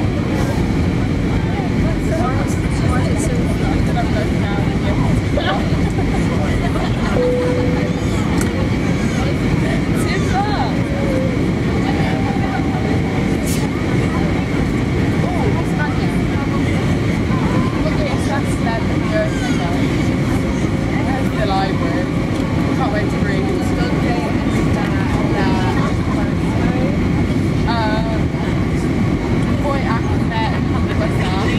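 Steady cabin noise inside an easyJet Airbus A320-family airliner on descent: the even rush of engines and airflow heard through the cabin, with faint passenger voices underneath.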